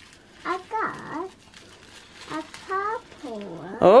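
A young child's short, high-pitched wordless vocalizations, several brief sounds with rising and falling pitch, followed at the very end by a woman saying "Oh".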